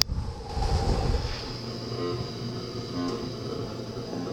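Electronic noise music: a dense, low rumble with a faint steady high whine over it, opening with a sharp click.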